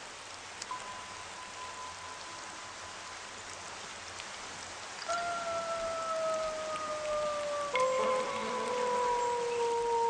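Steady rain falling, under soft background music: a held note enters about a second in, and about halfway through two more held notes come in and slowly slide down in pitch.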